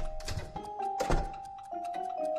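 Background film score with sustained notes, and a wooden door thudding shut about a second in.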